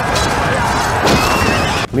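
Battle sound effects of charging cavalry: a loud, dense wash of noise with a horse whinnying about a second in, cutting off abruptly just before the end.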